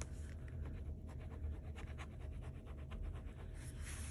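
Handheld scratcher tool scraping the latex coating off a scratch-off lottery ticket in quick, irregular strokes, faint. The coating is gummy and a little hard to scratch.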